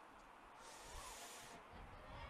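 Near silence: faint background hiss, a little stronger for about a second in the middle.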